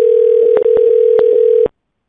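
Telephone line tone after the call is cut off: one steady, loud tone broken by a few clicks, which stops suddenly shortly before the end.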